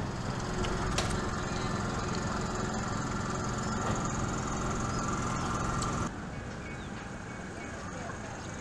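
Outdoor location sound: a steady, noisy rumble with faint voices in it. About six seconds in, it drops abruptly to a quieter background.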